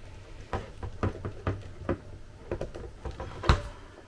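Small clicks and taps of AA batteries and a plastic battery holder being handled while fitting them into an RC transmitter, with one louder knock about three and a half seconds in.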